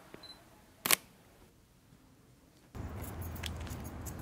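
A single camera shutter click about a second in. Past the middle it gives way to steady outdoor background noise with a low hum.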